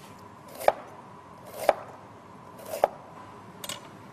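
Kitchen knife cutting vegetables on a cutting board: three firm strokes about a second apart, then a lighter one near the end.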